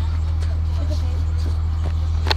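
School bus engine running with a steady low drone, heard from inside the passenger cabin.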